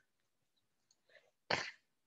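Near silence, then about one and a half seconds in a single short, sharp burst of breath noise from a person.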